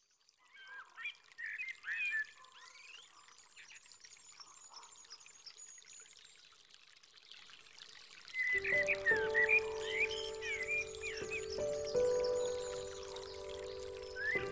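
Birdsong of short chirping calls over a faint trickle of running water; at about eight and a half seconds soft music with long held notes comes in beneath the birds and grows louder.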